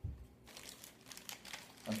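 Clear plastic parts bag crinkling and rustling as it is picked up and handled, after a soft low bump at the start.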